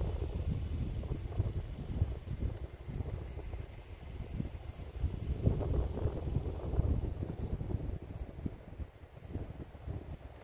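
Wind buffeting the microphone in uneven gusts, a low rumbling rush that swells strongest a little past the middle.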